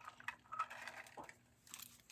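Faint rustling and a few soft clicks of a deck of oracle cards being handled.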